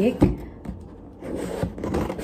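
Scissors cutting into a cardboard box: a sharp snip or knock just after the start, then rustling, scraping cuts through the cardboard from a little past halfway.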